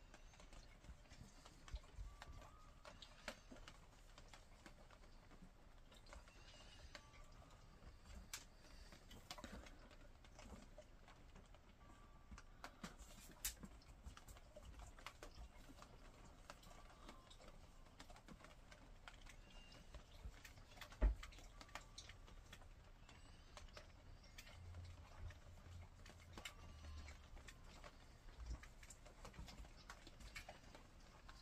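Quiet, scattered clicks and taps of dogs' claws and paws on a hard floor as two dogs tussle, with one louder thump about two-thirds of the way through.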